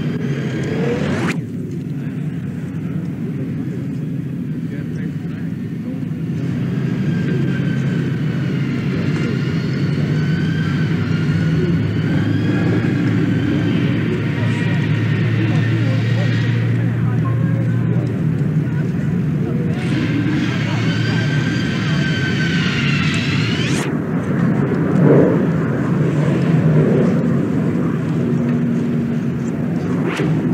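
Steady traffic rumble on a city street, with an aircraft's high whine wavering in pitch overhead for much of the time and cutting off abruptly near the end; indistinct voices.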